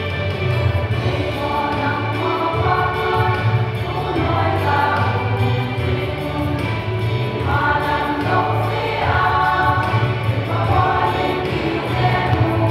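A women's choir singing a gospel hymn in unison, with voice phrases rising and falling over a steady low backing.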